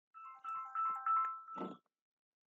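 A short electronic tune of quick stepped beeping notes, like a phone ringtone or notification, followed by a brief lower sound near the end.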